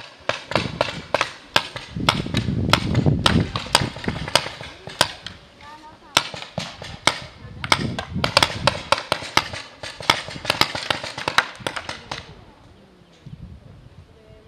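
Paintball markers firing during a game: many sharp, irregular pops, some close and loud and others fainter, that stop about twelve seconds in.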